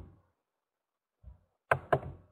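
A few short knocks or taps close to the microphone: one at the start, a soft dull one partway through, then two sharp ones in quick succession near the end.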